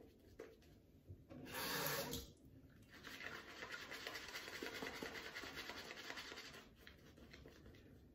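Shaving brush rubbing lather over two days of beard stubble: a soft, scratchy brushing of quick strokes. There is a brief louder swish about a second and a half in, and steadier brushing from about three seconds to near the end.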